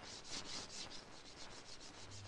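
Faint steady hiss with a fine scratchy crackle: the background noise of an old film soundtrack.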